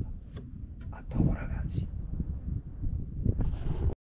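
A man's voice speaking quietly, over a steady low rumble of noise on the microphone. The sound cuts off suddenly just before the end.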